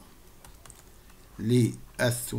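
Faint taps and clicks of a stylus on a tablet screen during handwriting. About one and a half seconds in, a man's voice makes one short syllable.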